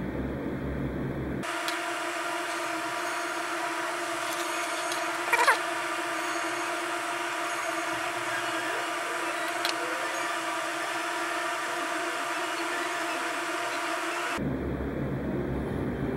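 A steady machine hum with a faint whine starts abruptly about a second and a half in and cuts off abruptly shortly before the end. A short squeak rising in pitch comes about five seconds in.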